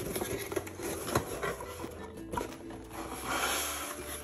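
Cardboard mailer box being opened by hand: scattered taps and clicks as the flaps are handled, then a brief rustle about three seconds in as the lid comes open.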